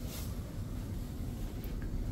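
Passenger lift cab travelling down after the '0' button is pressed: a steady low hum of the running lift, with a brief soft rustle at the start.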